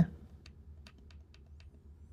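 A few keystrokes on a computer keyboard: about five separate light clicks, the first about half a second in and the rest roughly a quarter second apart.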